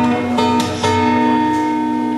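Acoustic guitar played solo between sung lines, with picked notes struck about half a second and a second in and the chord left ringing.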